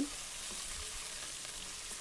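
Diced boneless chicken with chopped onion and garlic sizzling steadily in hot oil in an aluminium pan as it is stirred with a wooden spoon.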